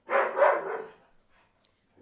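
A pet dog barking loudly in a short burst in the first second, alerting at someone outside.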